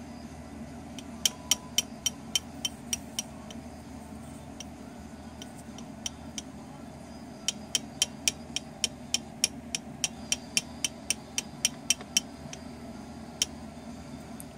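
Tapping of a toy drill: sharp, hard clicks at an even three to four a second. A short run of about eight comes about a second in, and a longer run of about eighteen follows from about seven and a half seconds in.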